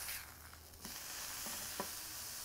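Lamb patty sizzling on a hot cast-iron griddle as it is flipped with a metal spatula. The sizzle drops off briefly and comes back just under a second in, with a couple of light clicks of the spatula on the griddle.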